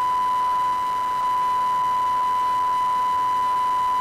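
Broadcast line-up test tone on a news agency's live-feed holding slate: one steady, unbroken beep held at a single pitch that cuts off suddenly at the end. It fills the gaps between repeats of the spoken circuit ident while the feed waits for programme.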